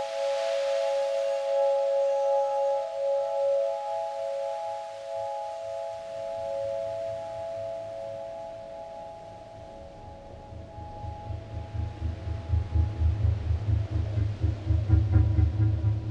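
Glass harp: wine glasses rubbed at the rim, giving several sustained ringing tones that waver and slowly fade over about ten seconds. A low, rapidly pulsing rumble comes in about six seconds in and swells to become the loudest sound near the end.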